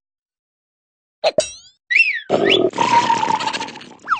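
Cartoon larva character's nonsense vocal noises, starting about a second in: a short cry, a call that rises and falls in pitch, then a longer rasping grunt that fades near the end.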